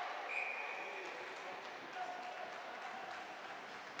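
A referee's whistle blows once, a short steady shrill note, a fraction of a second in, stopping play. Underneath is hockey-rink ambience with a few light stick or skate knocks and indistinct voices.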